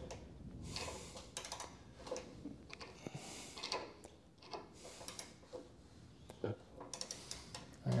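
Faint, scattered small clicks and metal sounds from a long torque wrench and socket as the front axle nut of a motorcycle is slowly tightened.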